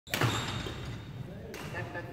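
Badminton play in a large sports hall: a sharp hit just after the start that rings on in the hall, another about a second and a half in, and a voice near the end.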